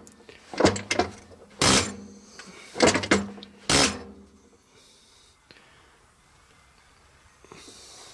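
A diesel injector nozzle popping on a hand-lever nozzle tester: four short, sharp spray bursts about a second apart, then quiet. The nozzle opens at about 3,500 psi with a good, even spray pattern.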